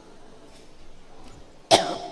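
A man's single loud cough close to the microphone, about a second and a half in.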